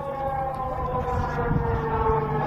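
Alarm siren wailing on one long, slowly falling tone, the warning sounded during a rocket attack on a gas field. A steady low hum lies beneath it.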